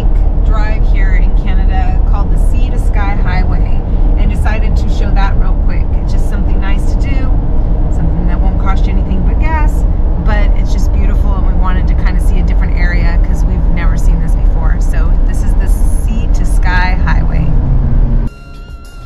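A woman talking over loud, steady road and engine rumble inside the cabin of a vehicle driving on a highway.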